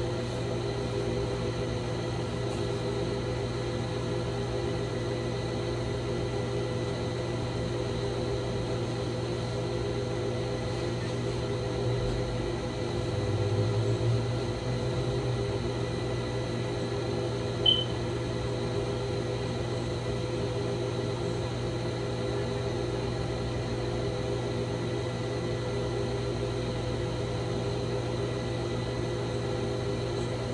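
Steady mechanical hum made of several fixed tones. A brief low rumble swells in about twelve seconds in, and a single short sharp click comes near eighteen seconds.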